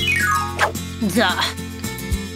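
Cartoon background music with a quick falling glissando sound effect at the start, followed by short whimpering vocal sounds from the cartoon character.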